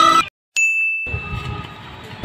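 Music cuts off abruptly, and after a brief silence a single high, clear ding sounds and fades within about half a second. The ding is an edited-in bell-like sound effect at the cut between scenes, leaving faint low outdoor background noise after it.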